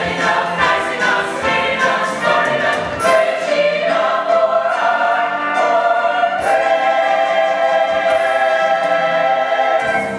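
Stage musical cast singing in chorus with accompaniment, closing on a long held chord that begins about six and a half seconds in.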